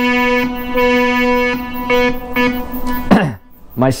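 Behringer 2600 analog synthesizer playing the same note several times, a bright, buzzy tone full of overtones, with VCO-1 being mixed into the patch. The notes stop a little after three seconds in.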